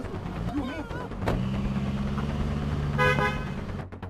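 A car door slams about a second in, followed by a steady low hum and a short car-horn toot near the three-second mark; the sound cuts off suddenly just before the end. A voice cries out briefly at the start.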